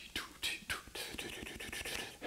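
A man making whispered, unvoiced mouth-drum sounds: a run of short hissing 'ts'-like bursts in the first second that then trail off.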